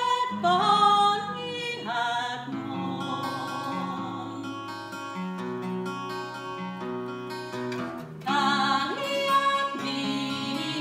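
A woman's unaccompanied-sounding folk voice singing a slow lullaby with vibrato over a fingerpicked steel-string acoustic guitar. She stops after about two and a half seconds, leaving the guitar playing alone, and comes back in near the end.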